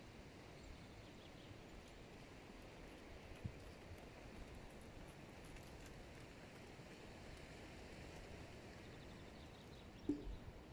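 Near silence: faint outdoor background noise, with one faint knock about three and a half seconds in.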